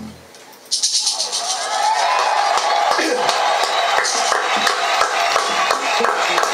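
The band's tune ends on its last low notes, and after a brief pause a few people in the studio clap, with voices over the clapping.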